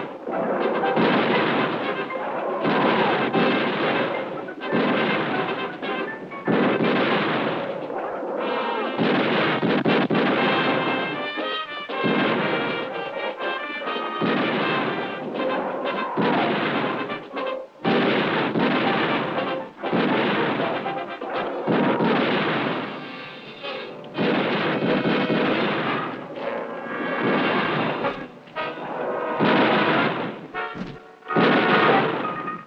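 Repeated gunfire from a squad of soldiers' rifles and a submachine gun, sharp shots every second or two, each trailing off, mixed with a dramatic music score. The sound is thin, with little bass.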